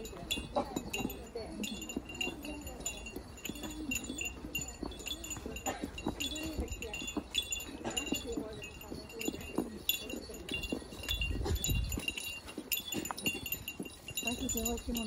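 A small metal bell jingling over and over in short, bright rings, with voices talking faintly beneath.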